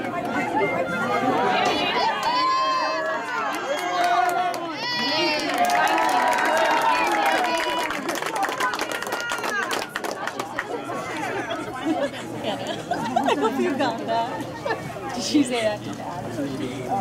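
Spectators talking over one another, unintelligible crowd chatter, with a few high-pitched voices calling out a few seconds in.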